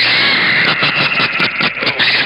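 CB radio receiver audio with several stations keyed up on the same channel at once: a loud, harsh, distorted rasp with garbled, unintelligible voice fragments buried in it.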